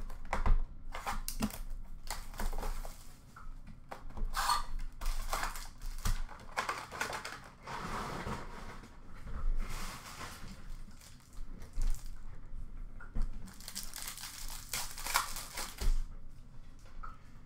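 Foil trading-card pack wrappers being torn open and crinkled by hand, an irregular run of tearing and rustling, with a few sharper crackles.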